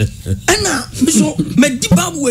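Speech: people talking, with a short lull at the start before the talking resumes.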